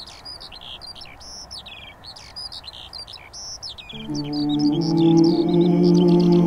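Birdsong: many quick chirps and whistles throughout. About four seconds in, a steady low chord of background music swells in beneath the birds and becomes the loudest sound.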